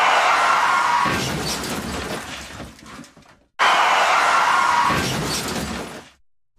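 Two crash sound effects, each a sudden smash with shattering glass that fades away over a few seconds; the second hits about three and a half seconds in.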